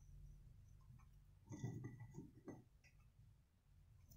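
Near silence, broken about a second and a half in by a few faint, short rustles and light taps of hands working potting soil in a plastic planter.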